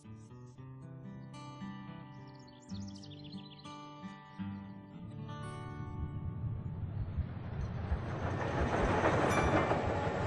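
Acoustic guitar music, joined from about halfway by the noise of a moving train that swells steadily louder toward the end.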